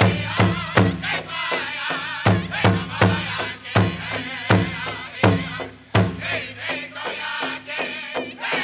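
Powwow drum group singing a grass dance song: several voices sing in high, wavering chant over a big drum struck in a steady beat of about two to three strokes a second. The beat pauses briefly about two seconds in.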